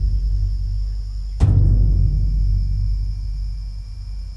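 Location recording of deep, low percussive impacts ringing out: one is already decaying at the start and a second lands about a second and a half in, each fading slowly. A steady high drone of insects runs underneath, and the birdsong has been removed by spectral retouching.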